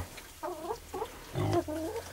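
Domestic hens making soft, low clucking calls in two short runs: one about half a second in, the other around a second and a half in.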